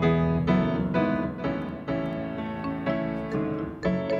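Piano and keyboard playing a peppy instrumental lead-in to a worship song, chords struck about twice a second.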